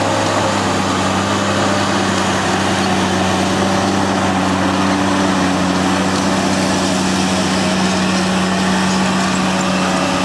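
Diesel engine of a Caterpillar wheel tractor running steadily under load as it pulls a MEGA MES34 elevating scraper through a loading pass, with the noise of the cutting edge and elevator working the dirt into the bowl.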